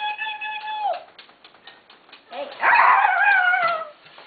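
A person's voice making playful dog whines for a dog hand puppet: a held high whine that slides down and stops about a second in, then a louder whine falling in pitch near the end.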